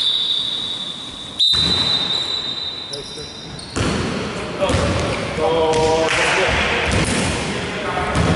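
Basketball game sounds on a hardwood gym court: the ball bouncing on the floor and players' feet, with a short shout about halfway through. A steady high-pitched tone runs through the first half.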